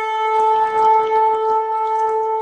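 A single long, steady horn note, a trumpet-call sound effect, with a rougher, noisier layer joining about half a second in.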